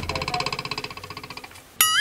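Comic sound effects: a rapidly pulsing, buzzy tone for about a second and a half, then near the end a sudden wobbling boing whose pitch warbles up and down.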